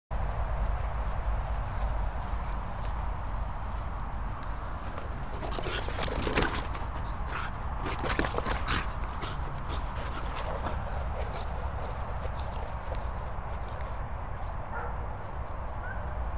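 A French bulldog mouthing and shaking a red plastic toy on frosty grass, making a run of crackling, clattering knocks that is busiest and loudest in the middle. A low steady rumble, like wind on the microphone, runs underneath.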